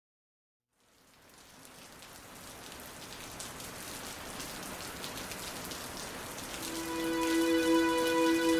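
Opening of a dream-pop track: after a second of silence, a crackly, rain-like noise slowly fades in and swells, and about a second and a half before the end a sustained note with overtones comes in over it.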